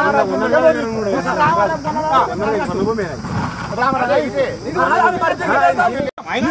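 Speech only: men talking outdoors in a back-and-forth discussion.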